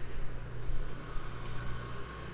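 Steady low hum with a background noise haze.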